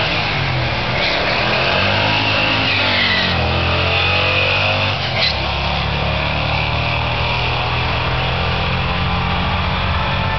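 Two Ford Mustangs, one a 2003 GT with a 4.6-litre V8, catless X-pipe and Flowmaster 40 exhaust, at full throttle down a quarter-mile drag strip. The engine pitch climbs through each gear and steps down at the upshifts, about one, three and five seconds in.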